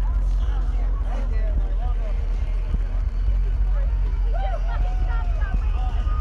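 Loud electronic music from a festival sound system, dominated by a steady, deep bass, with crowd voices talking and calling out close by.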